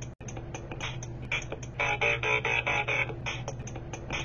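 Electronic backing beat made from Bop It toy sound effects and game beats, a steady rhythm of short hits. It drops out for a moment just after the start, and a burst of pitched tones plays for about a second in the middle.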